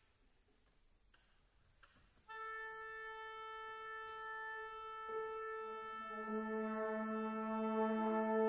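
Contemporary chamber ensemble music. After about two seconds of near silence a single held wind note enters, then further sustained brass and wind notes join one by one, building a slowly thickening, growing chord.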